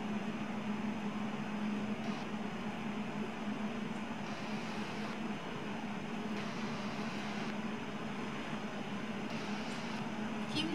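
Steady background hum and even rush of air-handling machinery in an indoor ice rink, with a constant low drone.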